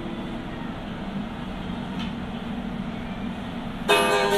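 The last strummed chord of an acoustic-electric guitar ringing out and fading within the first second, then a steady background hiss, with a faint click about halfway; a new strum comes in right at the end.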